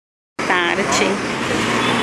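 Street ambience: people's voices close by over a steady hum of road traffic, cutting in abruptly about a third of a second in.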